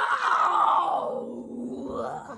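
A drawn-out vocal cry or groan that slowly falls and fades out over about two seconds.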